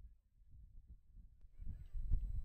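Faint, distant shouts of footballers on an open pitch over a low rumble, growing louder near the end.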